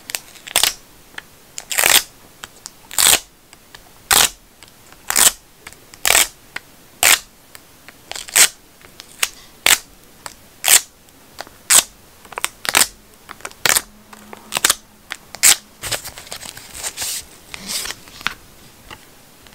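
A dust-removal sticker dabbed again and again on a phone's glass screen, a sharp sticky tap-and-peel about once a second. Near the end, soft rustling handling noise.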